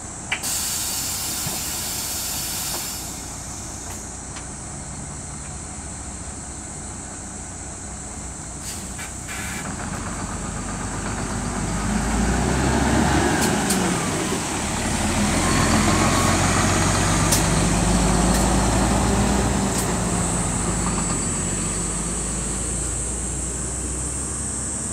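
Hino diesel city bus idling, with a burst of hissing released air right at the start, then its engine working harder and louder as the bus pulls away and drives past, easing off near the end.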